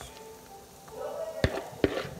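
A mixing bowl being handled close up: two sharp knocks about half a second apart in the second half, over a faint steady hum.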